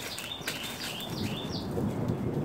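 A songbird chirping: a quick series of short, high chirps that stops about one and a half seconds in. A low rustling, scuffing noise comes up over the last second.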